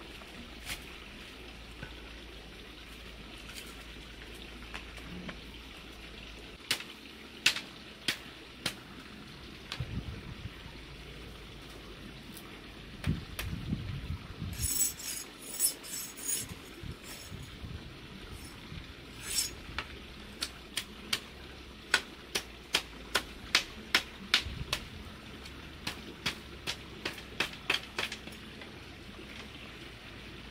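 Machete chopping and splitting a green bamboo pole: scattered sharp cracks, a cluster of crackling in the middle, then a run of quick strikes about two a second near the end.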